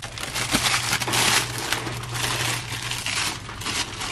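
A clear plastic bag crinkling and rustling as it is handled, an irregular rush of crackles.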